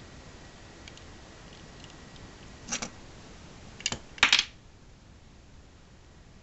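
Handling noise from a plastic scale model being worked by hand: a few faint ticks, then three short bursts of sharp clicks and knocks, the loudest a little past the middle.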